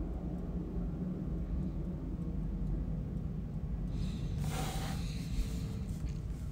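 Steady low rumble of room background noise, with a brief rustle about four and a half seconds in.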